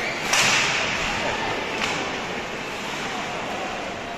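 Ice hockey stick slapping the puck: one sharp crack about a third of a second in, ringing on in the rink, and a fainter click near two seconds, over a steady haze of rink noise.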